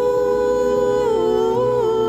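Two women singing a traditional Serbian folk song in harmony, holding a long note and then moving through the melody about a second in, over live band accompaniment.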